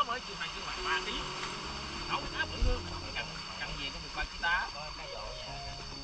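Short snatches of people's voices over a steady faint hum.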